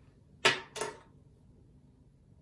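Two quick rips of adhesive tape being pulled off a small plastic part, the first louder, about a third of a second apart.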